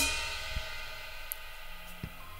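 Acoustic drum kit's cymbals struck hard once and left ringing, fading away steadily, with a light drum tap about half a second in.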